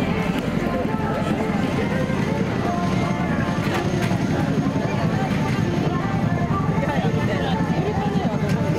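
Many people talking close by over a steady, low engine rumble.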